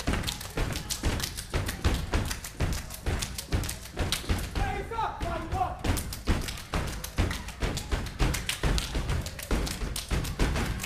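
A step team stomping and clapping in unison on a stage floor: a fast, driving rhythm of sharp impacts that keeps up without a break.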